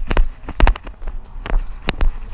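A person running through woodland: quick, irregular footfalls crunching on dry leaf litter and twigs, with low thuds from the jolting of a handheld camera.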